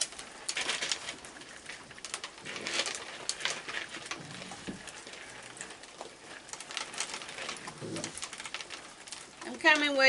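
Raccoons feeding on dry kibble and hot dog pieces: crunching, clicking and rustling from chewing and from paws and snouts in the food tray, with soft bird-like chittering calls from the young raccoons.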